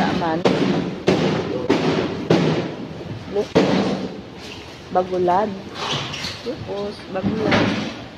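Irregular loud knocks and thuds, about one a second, amid people's voices.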